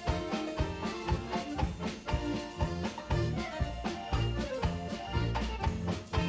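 Live polka music: two accordions and a banjo playing over a steady quick beat.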